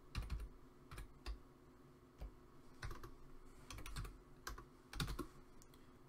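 Computer keyboard keys being typed to enter a terminal command: a slow, irregular scatter of faint clicks.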